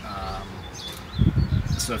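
A man talking, with a pause broken by a brief low rumble a little past the middle.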